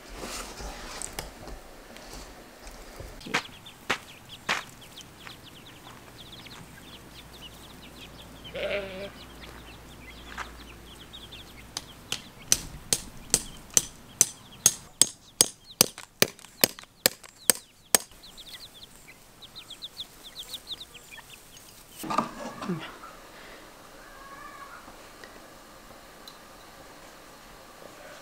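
Chickens calling, with a couple of short squawks, one a little before the middle and one near the end. A run of about sixteen sharp, evenly spaced knocks, about three a second, comes just past the middle and is the loudest part.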